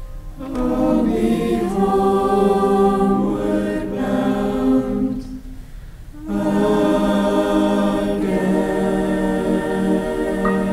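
School choir singing sustained chords in parts, entering about half a second in; the voices break off briefly about six seconds in, then come back in together.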